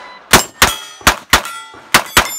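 Sig MPX pistol-caliber carbine firing five sharp shots in quick succession, loosely in pairs, with steel target plates ringing after the hits.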